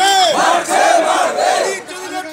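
A crowd of men shouting slogans together, many voices rising and falling at once; the shout dies away shortly before the end.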